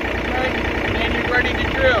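John Deere 3025E compact tractor's three-cylinder diesel engine idling steadily.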